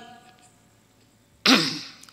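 A man clears his throat once, sharply and briefly, close to a microphone, about one and a half seconds in, after a short pause.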